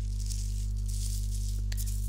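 Tissue paper rustling and crinkling as it is handled and wrapped around a jar, with two small clicks near the end, over a steady low hum.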